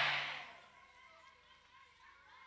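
The tail of a man's amplified "Amen" through a microphone in a hall, dying away within about half a second. Then near silence, with faint room noise.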